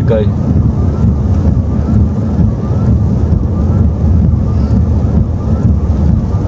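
Steady low road and engine rumble heard inside a car's cabin as it drives along a rain-soaked road.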